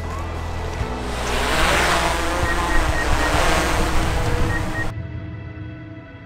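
Background music with a loud rushing whoosh laid over it, swelling about a second in and cut off abruptly about a second before the end.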